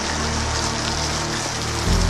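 Steady rain falling on pavement over a low, sustained musical score; the bass shifts to a new note near the end.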